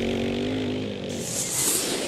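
Logo sound effect: a steady, buzzing, engine-like tone that fades out a little past a second in, followed by a brief high hiss like a whoosh.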